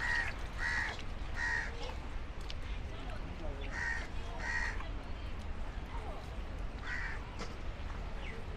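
A crow cawing six short times: three calls about two-thirds of a second apart, a pair a couple of seconds later, and one more near the end.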